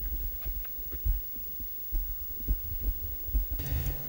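Irregular low thumps and rumbles of microphone handling noise. Near the end a steady hiss and hum come up as a table microphone is switched on.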